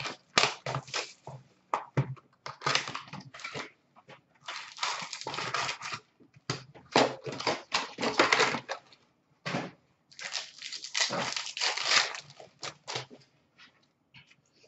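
Hands opening a trading-card box and tearing open a card pack: crackling and ripping of the pack wrapper and the rustle of cardboard. It comes in irregular bursts of up to a second or so, with short pauses between.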